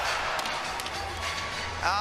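Hockey arena crowd noise with a few sharp clicks of sticks and puck on the ice. A commentator's voice starts near the end.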